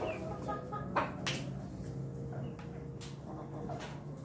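Domestic roosters clucking, with a quick run of short clucks in the first second. A few sharp taps come about a second in and again near three seconds.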